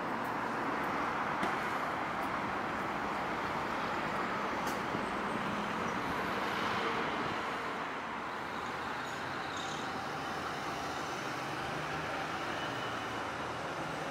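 Steady city street ambience: the even hum of road traffic, a little quieter from about eight seconds in.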